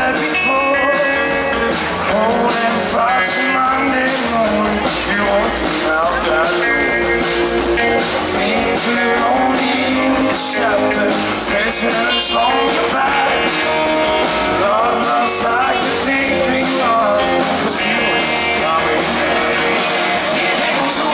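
Live rock band playing: a male lead singer sings over electric guitars and drums.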